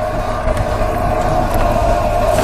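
A motor running steadily, giving a constant mid-pitched drone over a low hum.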